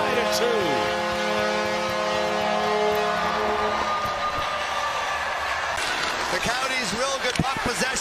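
Arena goal horn sounding steadily over a cheering crowd, marking a home-team goal; the horn stops a little under four seconds in, leaving crowd noise.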